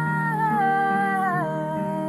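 Young woman singing a wordless vowel line that steps down in pitch, over sustained low accompanying notes.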